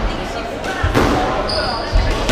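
Squash rally: sharp hits of the ball off racket and walls, about a second apart, ringing in the enclosed court.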